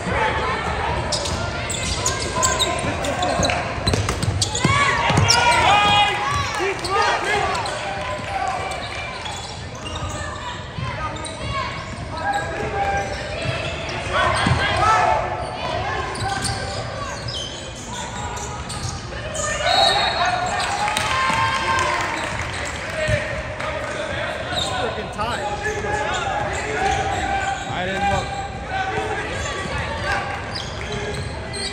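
Basketball game in a gymnasium: many voices of crowd and players overlapping, with a basketball bouncing on the hardwood court, all echoing in the large hall. Louder calls rise out of the chatter a few times.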